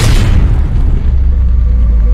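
Cinematic explosion sound effect: a sudden loud boom that trails off into a long, deep rumble.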